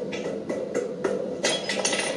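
A rapid, irregular run of short knocks and clicks, coming faster in the second second.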